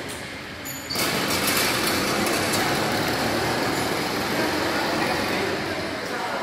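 Motorized bicycle engine running steadily, a loud even noise that starts suddenly about a second in.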